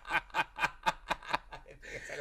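Male laughter under the breath: a run of short, breathy snickers, about four or five a second, tailing off near the end.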